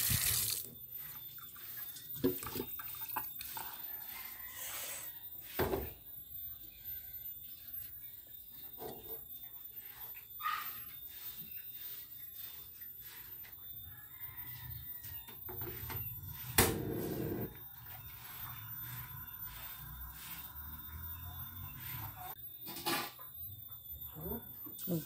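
Tap water running into a stainless steel sink and shut off within the first second. Then a quiet stretch with scattered faint knocks, a louder burst of noise about two-thirds through, and another knock near the end.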